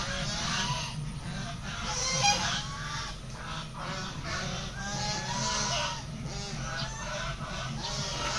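Domestic fowl calling over and over, many short rising-and-falling calls overlapping one another.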